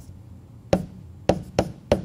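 Pen stylus tapping and clicking on a tablet screen while handwriting digital ink: about four sharp taps in the second half, after a short quiet start.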